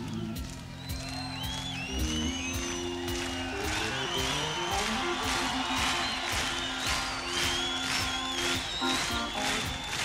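Live 1970s hard-rock band recording: sustained low keyboard notes moving in steps, with high gliding whistle-like tones and a quick run of sharp hits above them.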